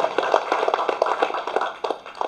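Audience applauding, a dense patter of many hands that dies away near the end.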